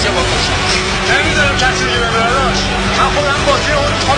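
Voices talking over a steady low drone, with a held tone underneath that stops about three seconds in.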